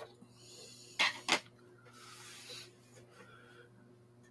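A fly-tying bobbin holder with white thread picked up and handled: soft rubbing and scratching, with two sharp clicks about a second in.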